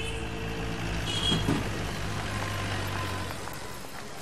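Street traffic: engines of passing vehicles running, with a steady low engine hum that fades out about three seconds in.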